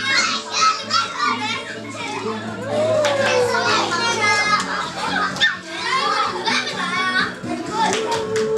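Excited voices of many young children, chattering and calling out together, over background music with steady low notes.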